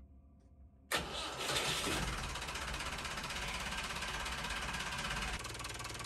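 Inboard boat engine starting about a second in and settling into a steady idle, running on newly fitted engine mounts. It drops a little in level after about five seconds.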